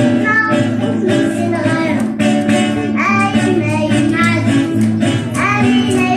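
Children singing a song into microphones with acoustic guitars strummed along, a live amplified performance.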